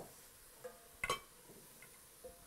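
A wooden spoon stirring sliced mushrooms in a stainless steel pot: a few faint knocks and scrapes, the sharpest right at the start and another about a second in.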